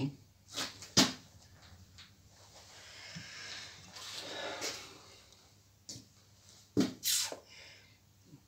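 A few short knocks and clicks from a sheet-metal fuel tank and its bracket being handled on a steel workbench, with a stretch of soft rubbing of a hand over the tank in the middle.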